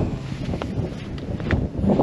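Wind buffeting the microphone in a low rumble, with a few sharp scuffs of footsteps on a stony trail.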